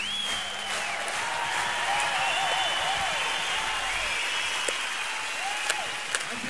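Audience applauding, with a few high, wavering tones over the clapping, easing off slightly near the end.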